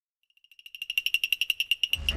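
Rapid high-pitched electronic beeping, about eleven beeps a second, fading in from silence and growing louder: the opening of a TV serial's title music.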